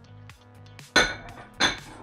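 Metal weight plates clanking against each other and a dumbbell handle as they are handled: two sharp clanks with a short ring, the second about two-thirds of a second after the first, over background music.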